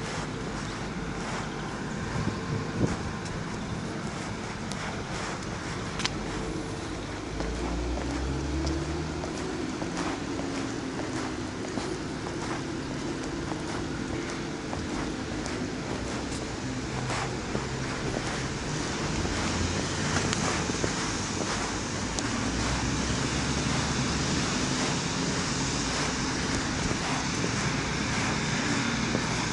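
Outdoor street ambience: a steady wash of road traffic with wind on the microphone, growing louder about two-thirds of the way through, with a few small clicks.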